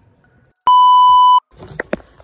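A single loud, steady electronic bleep lasting under a second, switched on and off abruptly: an edited-in censor-style beep tone.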